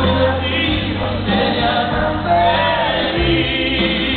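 Live concert performance: a band playing with singing voices over it, at a steady loud level.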